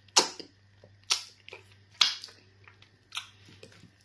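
Close-miked chewing of a mouthful of fufu and stew, with four sharp wet mouth smacks about a second apart.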